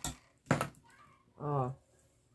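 A sharp click about half a second in, then one short voiced sound near the middle, a brief vocal utterance of a person.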